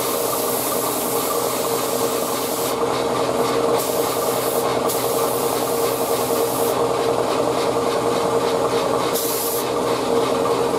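Gravity-feed spray gun hissing as it sprays paint, over a constant hum. The highest part of the hiss drops out for short spells a few times as the spray stops and starts.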